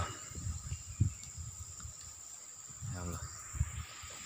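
A steady, high-pitched drone of insects in the surrounding forest, with scattered low thumps on the microphone.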